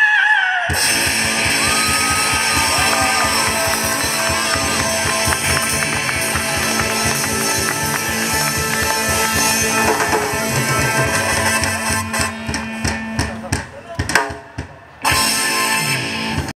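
A live rock band playing through a stage PA, with electric guitars, bass and drums. Near the end the music breaks into separate hard hits, drops off briefly, then comes back in.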